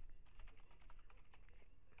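Computer keyboard typing: a quick run of faint keystrokes as a web address is keyed in.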